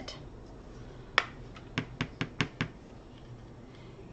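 Small plastic pot of Brusho watercolour crystals handled on a tabletop: one sharp click, then about half a second later a quick run of five or six clicks and taps.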